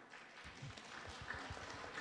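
Faint, scattered audience applause that starts about half a second in and grows slightly, as a speech ends.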